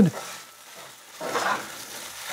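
Spatula scraping and pushing melted cheese across a hot HexClad hybrid stainless-steel frying pan, with a faint sizzle. The scrape is loudest briefly a little past halfway. The cheese is lifting cleanly off the pan's non-stick surface.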